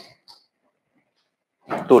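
A man speaking Hindi in a lecture, with a pause of about a second and a half of near silence in the middle before speech resumes near the end.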